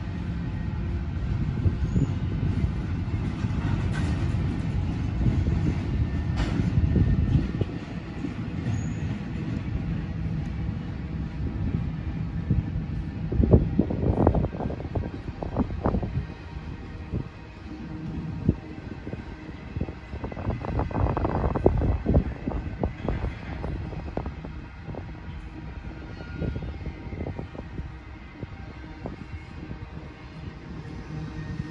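Freight cars of a passing manifest train rolling by: a steady low rumble with two runs of sharp metallic clacks from the wheels, one about halfway through and another a few seconds later, and the rumble easing off toward the end.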